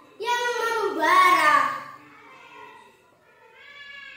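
A boy's voice declaiming an Indonesian poem in a drawn-out, sing-song tone, loud for the first two seconds, then dropping to a faint phrase near the end.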